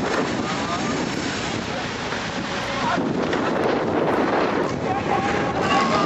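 Small portable fire pump engine running hard at high revs, pushing water out through the attack hoses, with people shouting over it.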